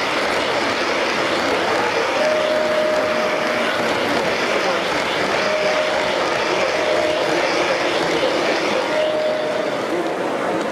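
O gauge model trains running past on the layout track, a steady rumble of wheels under crowd chatter. A single held tone sounds four times, the first and longest starting about two seconds in.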